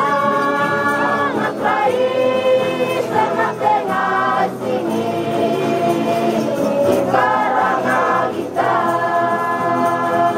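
A large group of Lusi singers singing a Christian song together in the Lusi language, many voices holding long notes in phrases with short breaks between them.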